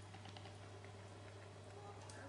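Faint, irregular crackling of a fire burning inside a small metal stove, over a steady low hum.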